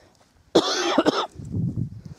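A woman coughing: a harsh burst starting about half a second in, followed by a lower, quieter sound.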